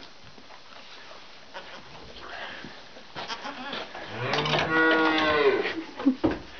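A buckling (young buck goat) gives one long, low bleat about four seconds in.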